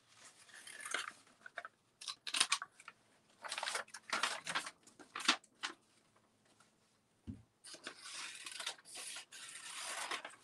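Scissors snipping through coloured paper in short, irregular cuts with pauses between them, and a denser run of cutting and paper rustle near the end. A single soft knock comes about seven seconds in.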